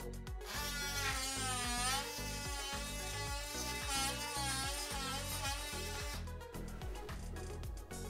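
Oscillating multi-tool (DeWalt 18V brushless) with a deeper blade undercutting a timber door architrave. Its whine wavers in pitch as the blade bites, starting about half a second in and stopping after about six seconds.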